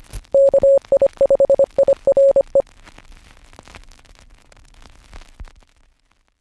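Morse code beeps: a single steady tone keyed on and off in dots and dashes for about two seconds, over crackling radio static. The static fades away over the following seconds.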